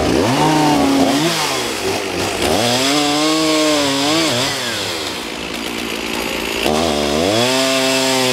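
Two-stroke gasoline chainsaw cutting through an oak log. Its engine pitch swings up and down, sags for a couple of seconds in the middle as the chain works in the cut, and climbs back to full speed near the end.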